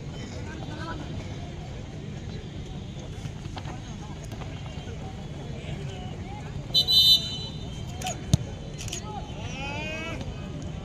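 Referee's pea whistle blown in a short double blast about seven seconds in, the loudest sound here. Around it, a steady rumble of wind on the microphone with faint shouts from players, and a single sharp knock about a second after the whistle.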